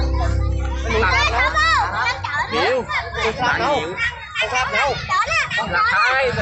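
Children's voices shouting and chattering, high-pitched and overlapping, over loud music with deep bass. The music drops out about two seconds in.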